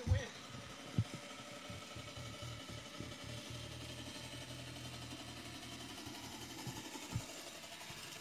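Swardman Electra battery-electric reel mower running as it is pushed across the lawn: a steady, faint whirring hum of the motor and spinning cutting reel. A few low thumps break in, one at the start, one about a second in and one near the end.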